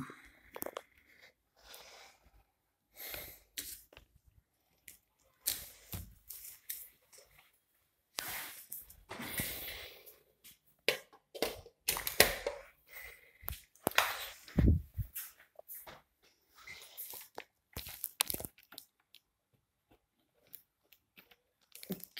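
Handling noise: irregular rustles, crinkles and knocks as plastic packaging and a laptop charger and its cable are handled and the charger is connected to the laptop.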